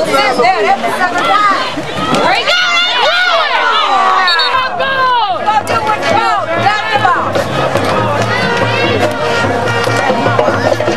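Football crowd yelling and cheering, many voices overlapping, loudest in the middle during the play, with a brief high whistle about four seconds in. Music plays underneath from about halfway, with a steady low beat.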